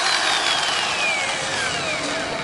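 Corded electric drill motor spinning down, its whine falling steadily in pitch as it slows.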